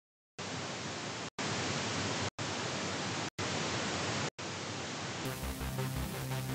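Hiss of television-style static noise, broken by four brief silent gaps about once a second. Electronic music starts about five seconds in.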